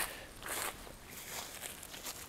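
Faint footsteps and soft rustling on mown grass, a few quiet swishes.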